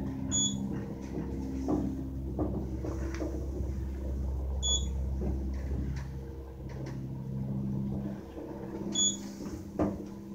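KONE hydraulic elevator car travelling, with a steady low hum from the drive that eases off about eight seconds in. Three short high beeps sound about four seconds apart, and there are light clicks as the car's buttons are pressed.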